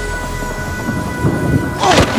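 Thunder rumbling during a thunderstorm, with a loud sharp burst near the end, under steady background music.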